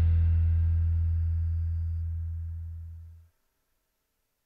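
The last chord of an acoustic guitar ringing out, its low bass note holding longest while the higher strings fade, growing steadily quieter before it cuts off suddenly a little over three seconds in.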